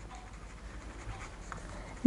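Marker pen writing on a sheet of paper: faint scratching of the tip across the paper as the words are written.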